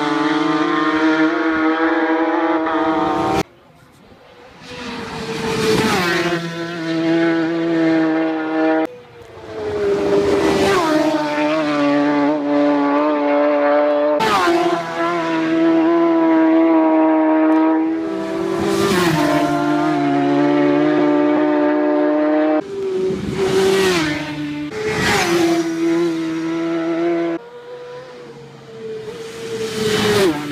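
Racing motorcycles passing flat out one after another, each high-revving engine note dropping in pitch as the bike goes by. The passes are cut together, so the sound changes abruptly several times.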